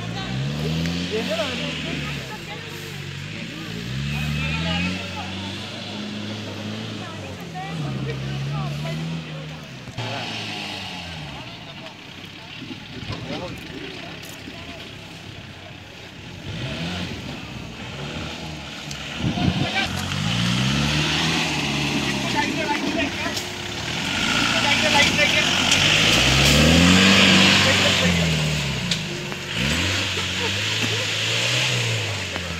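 Off-road racing jeep's engine revving hard on a dirt course, its pitch climbing and dropping in repeated surges every few seconds. It is loudest in the last third, with voices of onlookers.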